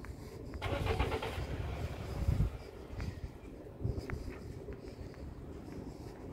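A car going by on the road, its engine noise swelling in the first half and fading again, over a steady low rumble.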